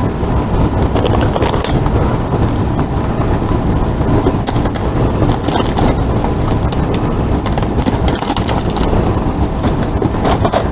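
A steady low rumble throughout, with scattered light clicks and rustles as a plastic reach-grabber pokes among trash bags and cardboard cracker boxes in a dumpster.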